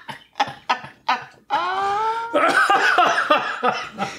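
A small group laughing hard: quick breathy, cough-like bursts of laughter, then a rising cry about a second and a half in and a louder, denser stretch of laughter after it.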